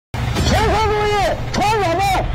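A tank crewman shouting fire-control commands in Chinese, calling for an armour-piercing round in long, high-pitched calls. Under the calls is the steady low rumble of the tank's interior. The sound starts after a split second of silence.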